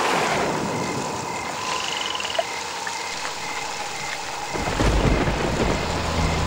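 Rain falling steadily, with a high chirp repeating evenly throughout. About four and a half seconds in, a car's engine rumble comes in and grows louder as the car approaches.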